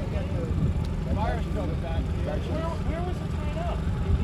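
A boat engine idling with a steady low hum, under indistinct voices.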